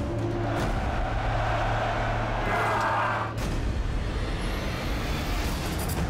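Trailer sound design: a low sustained music drone under a swelling rush of noise that builds and then cuts off sharply about three and a half seconds in, followed by denser soundtrack music.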